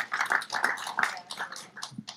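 Audience applauding, a patter of many hand claps that fades toward the end.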